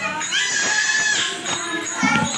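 Group of women singing a Shiv charcha devotional song, one high voice holding a long steady note for about a second, over hand-drum and jingling percussion.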